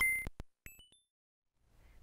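Short electronic jingle of quick stepped synth bleeps, each a clear pure note, jumping between pitches and stopping about a second in; then quiet room hum.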